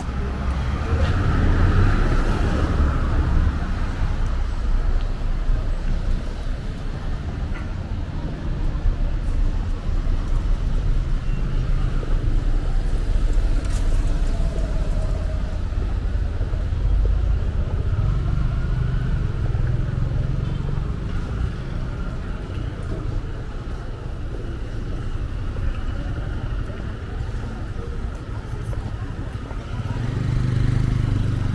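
Downtown street traffic: car and motorcycle engines running and passing in a steady low rumble that swells and eases as vehicles go by.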